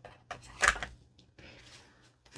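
Clear plastic wrapping on a rolled diamond-painting canvas rustling and crinkling as it is handled, with one louder crackle under a second in and a softer rustle later.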